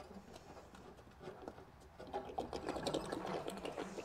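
Socket ratchet clicking in a fast, even run from about halfway through, as the anode rod is being unscrewed from a Suburban RV water heater to drain it.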